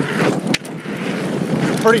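Wind rushing over the camera microphone and the tyres of a 2019 Giant Stance 2 mountain bike rolling on a dirt trail, with one sharp knock about half a second in.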